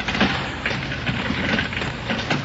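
Radio-drama sound effects: a few soft knocks and clicks near the start and about halfway through, over a steady low hum and hiss.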